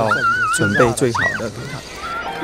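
A man speaking. Behind his voice is a high, wavering whine lasting most of the first second, then a short rising-and-falling call.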